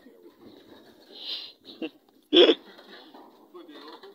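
Faint background voices murmuring, with one short, loud burst of sound a little over two seconds in.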